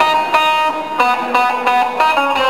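Live band playing music, with electric guitar and violin, the notes changing every few tenths of a second.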